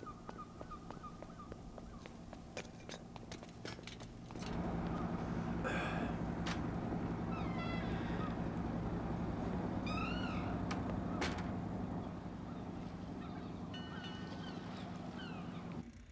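A steady low hum that grows louder about four seconds in, with a few short rising-and-falling animal calls, bird- or cat-like, heard over it.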